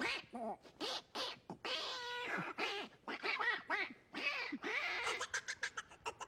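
A beatboxer's mouth-made vocal effects: sliding, warbling pitched sounds with a short held note, mixed with a few clicks. A quick percussive beat starts up again near the end.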